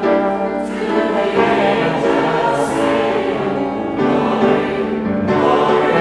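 Congregation singing a hymn in unison and parts, accompanied by piano and trombone.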